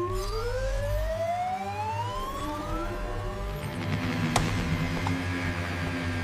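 Cartoon sound effect: a tone that rises steadily in pitch for about three seconds, over background music with a steady low bass. A single sharp click comes past the middle, and a hiss swells up near the end.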